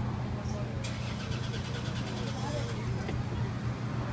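A steady low engine hum, like a vehicle idling. A rapid, evenly paced high clicking runs over it from about one second in to about three seconds in.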